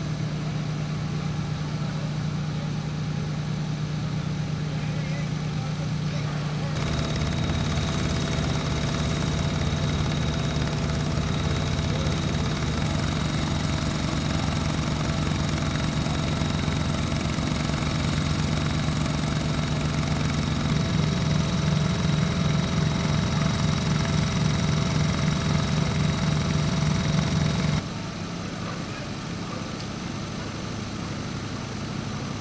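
Fire engine's diesel engine idling with a steady low drone, and a thin high whine alongside it from about seven seconds in. The sound grows louder about seven seconds in and drops back abruptly near the end.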